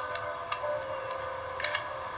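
Soft background music between spoken lines: a few steady held notes, with faint ticking clicks a few times.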